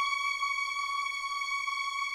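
A single high tone held steadily in a film score, unchanging, with nothing else sounding beneath it.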